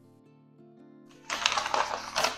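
Faint background music, then from a little past the middle a sheet of paper pattern rustling as it is handled and slid across the table.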